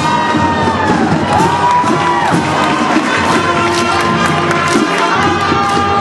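Marching band playing on a football field, with a crowd cheering and shouting over the music.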